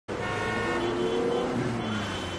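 City street traffic noise, with a car horn held for about the first second and a half.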